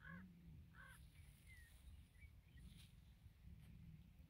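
Near silence: faint outdoor ambience with a low rumble and a few faint short calls and chirps, most of them in the first half.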